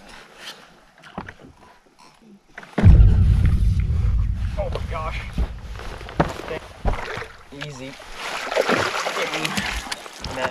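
A sudden low rumble about three seconds in that fades slowly, with men's excited voices over it as a hooked bass is fought beside a boat.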